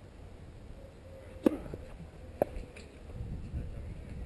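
Two sharp pops of touchtennis rackets striking the foam ball, about a second apart, during a rally, the first louder than the second. Wind rumbles low on the microphone throughout.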